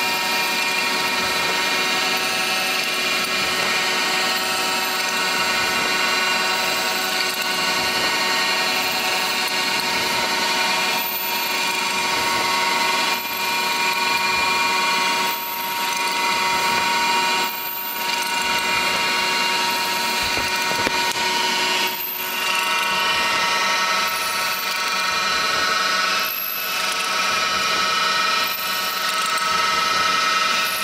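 CNC vertical milling machine drilling a row of holes in a thin aluminium plate: a steady spindle whine over continuous cutting noise. In the second half the noise dips briefly about every two seconds as the machine moves from hole to hole.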